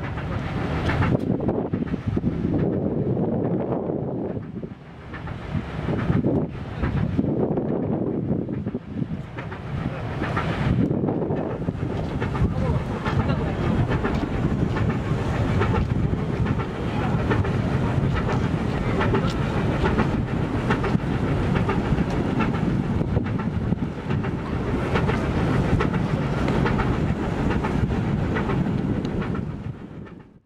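Wind buffeting the microphone over a steady low rumble, uneven for the first several seconds and then constant.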